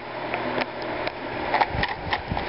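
A few light handling clicks and rustles over a steady hiss, with more clicks in the second half.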